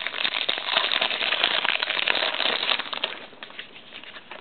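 Trading cards being shuffled and flipped through by hand, a dense run of quick snaps and rustles that dies down about three seconds in.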